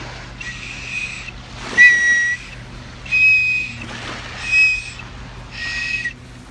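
A life jacket's plastic safety whistle blown in five short blasts, each a steady high-pitched tone, the second one the loudest. It is a distress whistle for calling for help.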